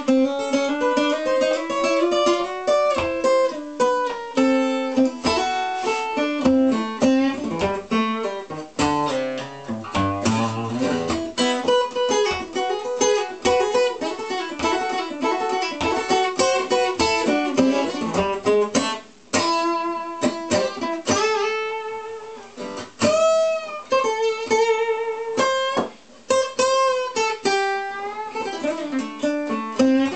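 Solo acoustic guitar, a handbuilt Runesson 001-special, played fingerstyle: plucked single notes and chords ringing out continuously, with a few bent notes and two brief pauses in the second half.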